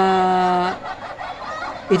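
A man's voice holding one drawn-out vowel at a steady pitch for under a second, a hesitation in mid-sentence, then a short pause before talk resumes near the end.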